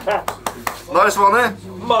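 Excited men's voices and laughter, with several sharp pats of a hand on a back during a hug in the first second.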